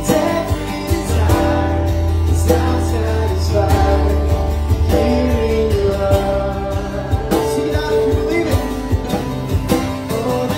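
Live acoustic worship music: two acoustic guitars strumming and a cajón keeping a steady beat under singing.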